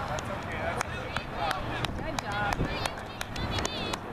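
Outdoor crowd sound at a youth soccer game: high-pitched calls and chatter from girls and spectators at a distance, with scattered sharp clicks throughout.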